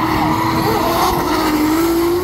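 Formula Drift car drifting through the corner: the engine is held at high revs in one sustained note that rises slightly, over the rush and squeal of the rear tyres sliding.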